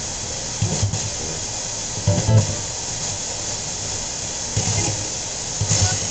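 Spirit box sweeping through radio stations: a steady static hiss broken by a few brief, chopped fragments of broadcast sound, some of it music.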